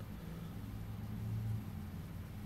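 Faint, steady low hum with a light hiss over it: room background between the spoken lines. The hum swells slightly in the middle.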